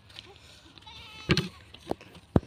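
A goat bleating faintly in a wavering call about a second in, followed by two short sharp knocks.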